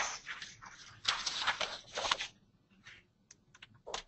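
Faint rustling and handling noise, then a few light, sharp clicks near the end, as a key is pressed to change slides.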